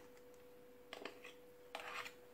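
Two metal dessert spoons scraping stiff meringue off one another: two short, quiet scrapes, about a second in and near the end, over a faint steady hum.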